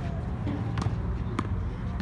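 Tennis ball bouncing on a hard court and being struck by a racket: two sharp pops a little over half a second apart, about a second in, over a steady low rumble.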